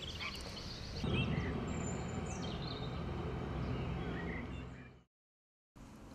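Birds chirping and calling over a steady low background rumble of the lakeside, fading out to silence about five seconds in.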